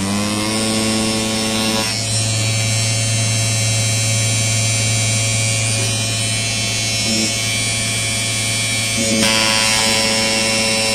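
Small brushed DC motor running on a 555-timer PWM speed controller, giving a steady electric hum and whine. At the very start the pitch is still rising as the motor speeds up. The tone changes abruptly about two seconds in and again a second before the end. The hum comes from the pulse-width-modulation frequency lying within hearing range, which is normal for this kind of controller.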